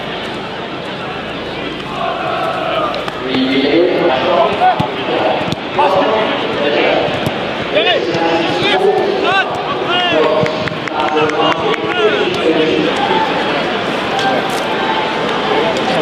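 Several voices talking and calling over one another, with scattered short knocks or thuds.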